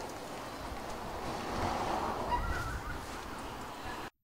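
Outdoor ambience with wind buffeting the microphone, a steady rush with low rumbling gusts. A brief faint chirp comes about two and a half seconds in.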